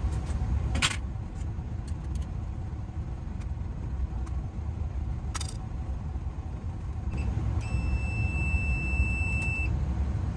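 Non-contact voltage tester giving one steady high beep for about two seconds near the end, sensing a live wire in the switch box. Under it is a steady low rumble, and two sharp clicks come earlier, at about one second and five seconds in.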